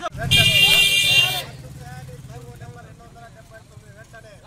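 A vehicle horn sounds once for about a second near the start, loud, over the low rumble of a passing motor vehicle, with people talking.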